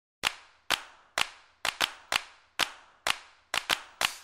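Sharp percussive hits in a steady beat of about two a second, a few of them doubled, each ringing out with a fading reverberant tail, starting a moment in: the percussion opening the soundtrack music.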